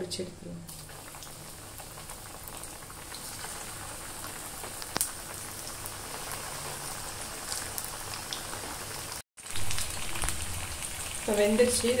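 Vermicelli-coated vegetable cutlets deep-frying in hot oil in a kadai: a steady sizzle with fine crackling that starts about a second in as the first cutlet goes into the oil, cut off briefly near the end.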